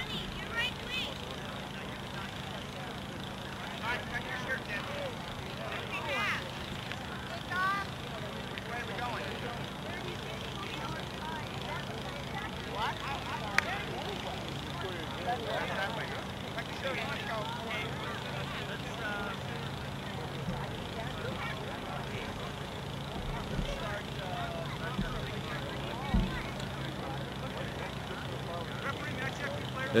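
Distant voices of children and coaches talking and calling out across an open soccer field, over a steady low hum, with a single sharp click about halfway through and a dull thump near the end.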